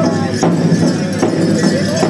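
Powwow song: a group of singers' wavering voices over a big drum struck in a steady beat about two and a half times a second.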